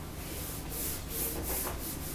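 Handheld whiteboard eraser wiping marker off a dry-erase board in quick back-and-forth rubbing strokes, about three a second.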